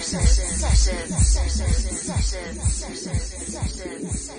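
Afro house DJ mix playing: a steady four-on-the-floor kick drum about twice a second with hi-hats, and a vocal line over the beat.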